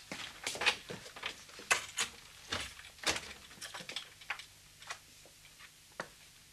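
Radio-play sound effects of someone going to open a door: a series of irregular footsteps, clicks and knocks, about two a second, over a faint steady hum.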